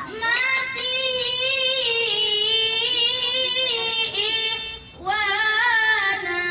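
A high solo voice singing long held notes that bend slowly in pitch, breaking off briefly near the end before starting a new phrase.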